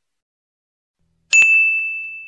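Notification-bell sound effect: after silence, a single high ding about two-thirds of the way in, ringing on and fading.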